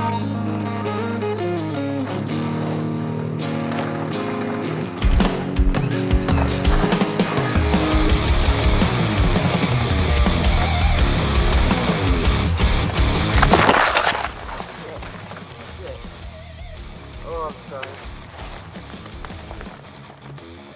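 Rock song playing with a heavy beat, then about fourteen seconds in a brief, loud scraping crash as the downhill mountain bike and rider go down on the gravel trail. After it the music is gone and the sound is much quieter.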